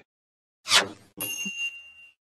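Cartoon sound effects of a drawer opening to reveal the notebook: a short swish, then a bright ding that rings for about a second.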